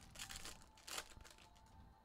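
Faint crinkling of a foil trading-card pack wrapper being torn open and pulled off the cards, in a few short bursts in the first second.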